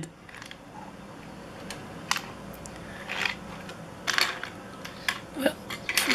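Die-cast toy cars being handled and pushed across a hard glossy surface: a few scattered light clicks and short scrapes.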